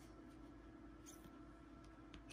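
Near silence with a steady low hum; about a second in, a brief faint squeak of rigid plastic card holders rubbing against each other as they are handled.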